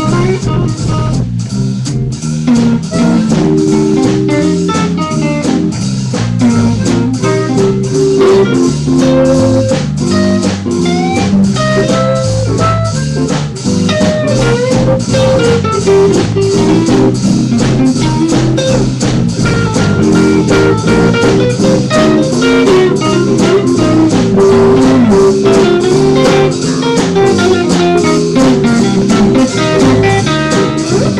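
A live blues band playing: electric guitars over bass and a drum kit keeping a steady beat. The lead line has sliding, bent notes.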